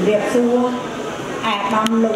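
Speech only: a woman speaking Khmer into a podium microphone.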